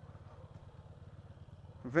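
Honda CG motorcycle's single-cylinder engine idling, a faint, steady low rumble; a man's voice starts near the end.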